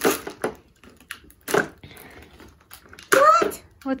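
A pink plastic toy capsule and its wrapped contents being handled and opened: a few sharp plastic clicks and knocks in the first half, with light rustling between. A short voice is heard near the end.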